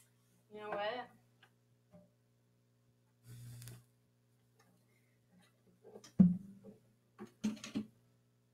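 An acoustic guitar being taken off and handled at a guitar stand: a brief rustle, then a sharp knock about six seconds in and a few smaller knocks and clicks near the end, over a steady electrical hum. A short vocal sound comes about a second in.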